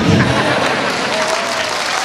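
An audience applauding, starting as the preceding speech ends.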